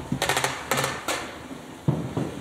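A rapid series of clicks and light knocks in a few short clusters.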